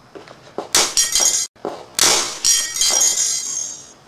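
Hammer blows smashing a Motorola Razr flip phone on concrete: a sharp crack about a second in, then a second crack with a longer, high ringing clatter of breaking parts.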